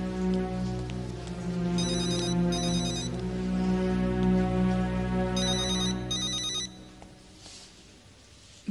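A mobile phone ringing in two double rings, a high trilling ring tone, a few seconds apart. It plays over sustained background music that drops away near the end.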